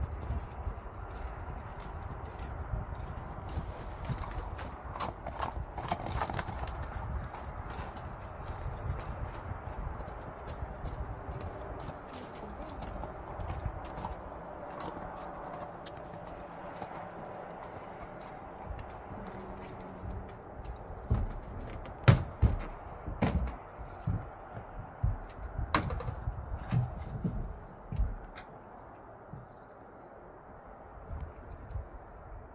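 A horse's hooves as it is led to a horsebox: scattered steps on packed snow, then a run of loud hollow knocks in the last third as it walks up the loading ramp.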